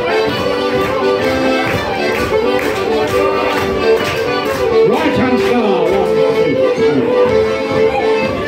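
Fiddle and melodeon playing a lively traditional dance tune together for a barn dance.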